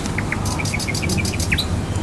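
A bird calling: a rapid string of short chirps, about seven in a second, ending in one longer falling note.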